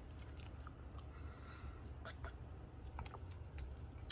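Faint chewing of a soft taco with scattered soft mouth clicks, over a low steady hum.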